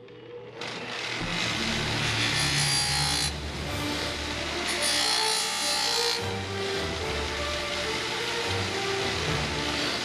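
Bench grinder winding up over the first second, then grinding the edge of a curved sheet-metal helmet piece in spells of harsh, high-pitched rasping. Background music plays underneath.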